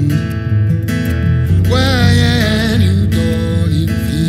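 Live acoustic guitar strumming over electric bass guitar. From about halfway through, a male voice holds a wordless, wavering sung note.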